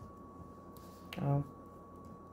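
A woman's short exclamation "Oh" a little past a second in, opening with a sharp click. A faint, steady high tone hums underneath.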